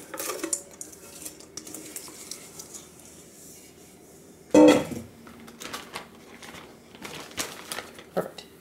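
Spatula scraping and tapping the last coated cereal out of a stainless steel mixing bowl into a plastic zip-top bag. Light scrapes and scattered clicks, with one louder knock about halfway through.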